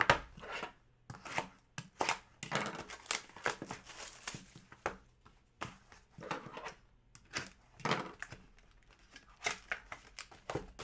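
Hands handling trading cards and a cardboard hobby box on a wooden table: irregular taps, slides and rustles of card and cardboard, with the box's cardboard lid being pulled open near the end.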